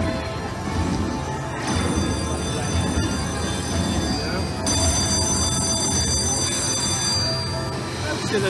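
Bally Ultimate Fire Link slot machine playing its bonus win music and credit count-up tones while the winner meter tallies a payout. High, steady ringing tones come in about one and a half seconds in and grow fuller past the midpoint.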